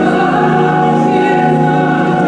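Church choir singing in held, sustained chords, with a change of chord at the start.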